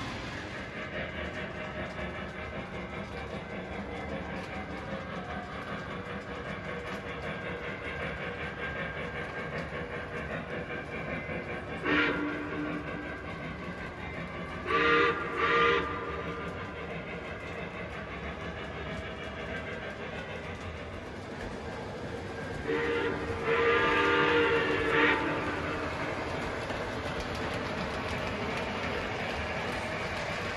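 Lionel O-gauge model train running steadily on its track. It sounds its onboard electronic signal once briefly about twelve seconds in, then twice in short blasts a few seconds later, then once for about two seconds near two-thirds of the way through.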